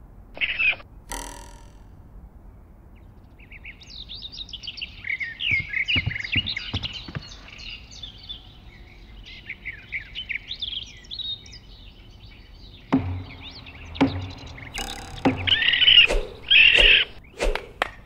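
Songbirds chirping in quick, twittering bursts for several seconds. Near the end this gives way to a run of sharp thuds and knocks, with two brief, brighter sounds among them.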